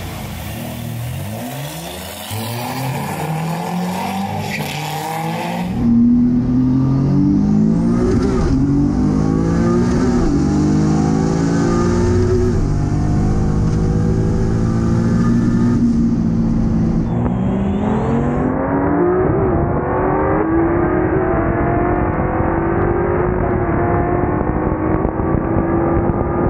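Nissan 240SX's turbocharged 3.7-litre VQ V6 revving, then accelerating hard from about six seconds in, its pitch climbing and dropping back several times through quick dual-clutch gear changes, heard from inside the cabin. It is running on wastegate pressure only, low boost.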